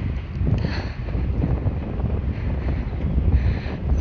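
Wind buffeting the phone's microphone: a steady, uneven low rumble.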